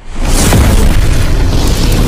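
Cinematic explosion sound effect: a deep boom that hits suddenly and stays loud as a heavy low rumble.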